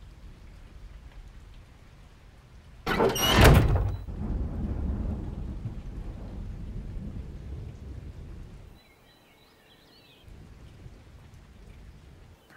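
A thunderclap: a sudden crack about three seconds in, then a rolling rumble that fades out over about five seconds, over a low background of rain.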